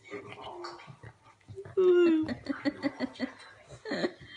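A dog licking a man's bald head with wet, clicky licks. About two seconds in, a man gives one falling, drawn-out vocal sound, then breaks into short rhythmic chuckles.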